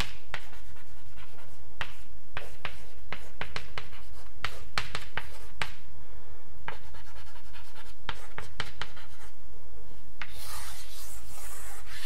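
Chalk writing on a blackboard: a string of short taps and scratchy strokes as letters and symbols go down, with a longer scraping stretch near the end.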